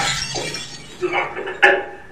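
A loud, noisy crash dies away in the first moments, followed by short bursts of voice and a single sharp knock about one and a half seconds in.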